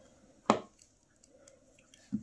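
A single sharp plastic click about half a second in, as a small cuff piece is pressed onto a Playmobil figure's arm, with faint handling of the plastic parts around it.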